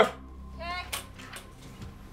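A voice says "OK" over a low, steady dramatic music drone, with a single short click about a second in.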